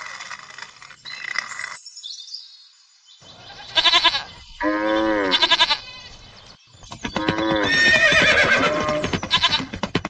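Farm animal calls, three in turn: two short ones about four and five seconds in, then a longer one near the end, with bleating among them.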